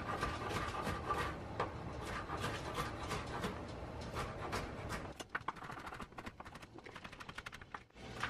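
Kitchen knife chopping vegetables on a wooden cutting board: a run of short knocks that come quicker and closer together in the last few seconds.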